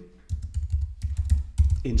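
Typing on a computer keyboard: a quick run of about eight key presses, each a sharp click with a low knock, as a command is typed out in a terminal.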